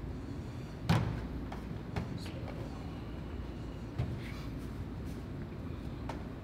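Pulled noodle dough slapped down onto a stainless steel worktable with a thud about a second in, followed by two lighter knocks and soft handling as the dough is pressed flat by hand.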